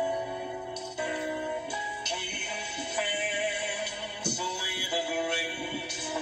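Karaoke backing track with a man singing along into a microphone, played back from a screen and picked up by a phone.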